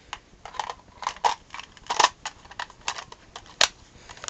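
Irregular light clicks and taps of objects being handled and the camera being moved, with two sharper clicks, one about two seconds in and one near the end.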